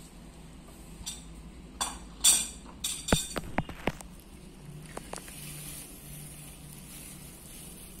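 Plastic bag crinkling in bursts as a hand squeezes stingless bee honey pots through it, followed by several light clinks of a spoon against a ceramic bowl.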